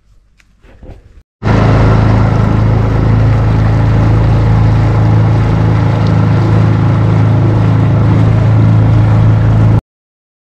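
A boat's motor running steadily under way, a constant low hum over a broad hiss. It starts abruptly about a second and a half in and cuts off just before the end.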